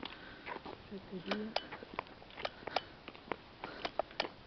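Quiet street ambience with scattered faint clicks and taps, and a brief low hum of a person's voice about a second in.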